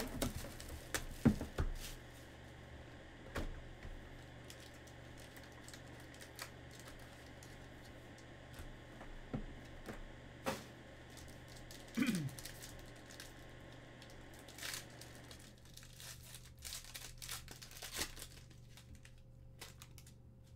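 Clear plastic shrink wrap being torn and crinkled off a sealed trading-card hobby box in the first couple of seconds. Scattered clicks and rustles follow as the box is opened and cards are handled, with a busier run of small clicks near the end.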